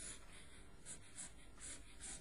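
Faint scratching of a pen or chalk writing, a handful of short strokes as a sketch is drawn.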